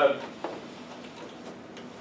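A short sharp click about half a second in, and a fainter one near the end, over quiet room tone after a brief spoken 'uh'.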